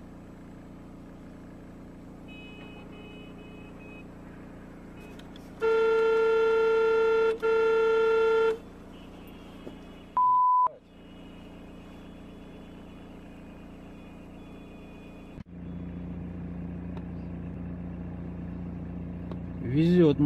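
Steady car engine and road hum heard from inside a vehicle. About six seconds in, a car horn blows loudly for nearly three seconds with one brief break, and a little later there is a single short high beep.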